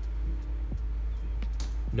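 Soft background music with held tones over a steady low hum.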